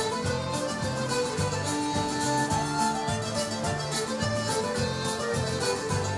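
Live folk band playing the instrumental opening of a song, with held melody notes over a steady, regular beat.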